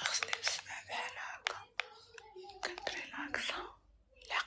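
A woman whispering, with many sharp clicks and taps mixed in.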